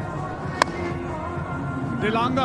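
Stadium music playing over the ground, with a single sharp crack of a cricket bat striking the ball about half a second in.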